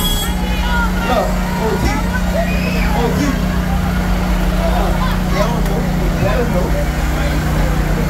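Crowd chatter from many voices over a steady low engine drone from the tractor towing a parade float.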